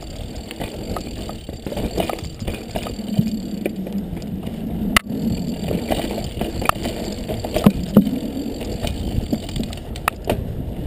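Mountain bike descending a dirt trail: tyres rolling over the ground with a steady rumble, broken by frequent small rattles and knocks from the bike. A sharp click comes about halfway through, and two louder knocks near the end.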